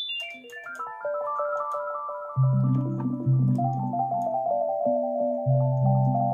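Yamaha Reface CS synthesizer being played: a quick run of notes steps down from high to middle register, then about two and a half seconds in, low bass notes come in under held chords.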